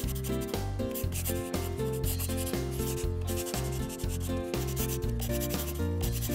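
Felt-tip marker rubbing and scratching on paper in short strokes as it traces an outline, over background music with a bouncing bass line.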